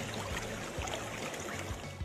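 Running stream water, a steady even wash of flowing water.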